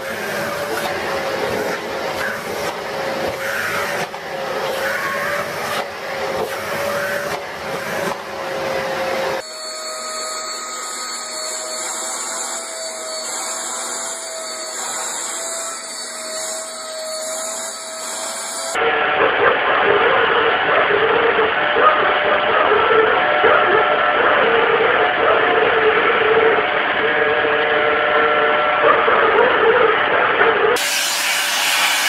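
Vacuum cleaners running with a steady motor whine while their nozzles are pushed over cats' fur. The sound changes in pitch and colour about a third of the way in and again about two-thirds in, as a different vacuum takes over, and the last one is louder.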